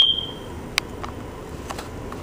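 A single clink of a utensil against a ceramic bowl at the start, leaving a short, high ring that fades within half a second, followed by a few faint clicks.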